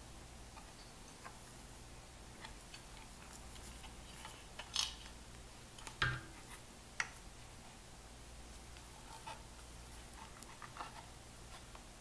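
Faint handling sounds from a loudspeaker's removed amplifier assembly being turned in the hands: a few light clicks and knocks, the clearest around five to seven seconds in, over a low steady hum.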